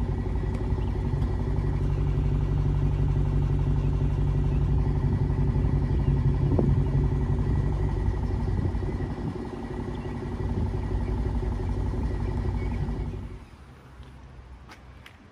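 Dodge Challenger's V8 idling with a steady low rumble, which drops away sharply near the end.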